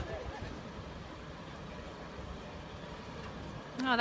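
Faint voices in the first half second over a steady low rumble of outdoor background noise.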